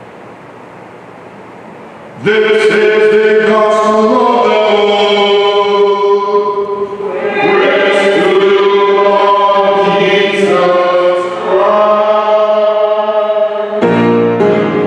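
A single voice chanting a liturgical text unaccompanied, in long held notes, starting about two seconds in, with short breaks about seven and eleven seconds in.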